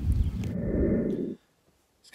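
Wind buffeting a phone's microphone outdoors, a loud, uneven low rumble with no voice in it. It cuts off abruptly just over a second in, leaving near silence.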